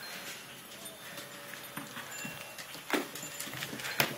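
A puppy's paws and claws clicking and scuffing on a wooden deck, with one louder knock about three seconds in.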